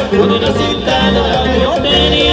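A live conjunto band playing Latin dance music, with a steady, repeating bass line.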